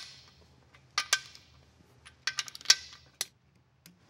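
Torque wrench tightening the main-cap bolts of a Chevrolet 409 V8 block: a series of sharp metallic clicks, a pair about a second in and a quick run of them in the second half.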